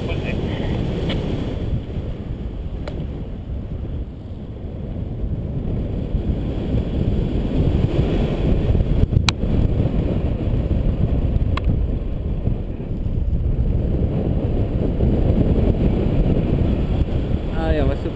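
Wind rushing over the camera microphone in tandem paraglider flight, a steady low rush that grows a little louder in the second half. Two brief sharp clicks come through about nine and eleven and a half seconds in.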